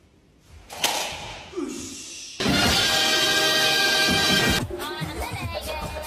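A sharp crash about a second in as a tall stack of clear cups and plates is knocked over, followed by a loud stretch of music. Near the end this gives way to dance music with voices.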